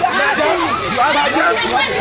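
Several voices talking loudly over one another in a heated argument, the words lost in the overlap.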